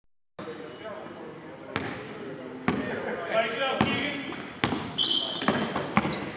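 A basketball being dribbled on a hardwood gym floor: sharp bounces roughly once a second, starting a little under two seconds in.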